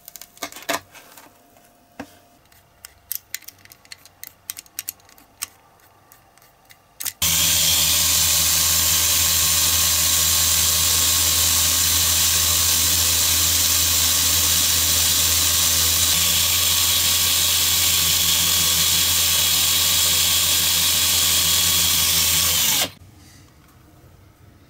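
Cordless drill running at one steady speed for about fifteen seconds, starting and stopping abruptly, spinning a small nail in its chuck against abrasive paper. Before it starts there are light clicks and taps of small parts being handled.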